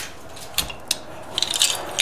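Pieces of raw black-lip mother-of-pearl shell clicking against one another as they are gathered up and handled. A few separate clicks come first, then a quick run of sharp clinks in the second half.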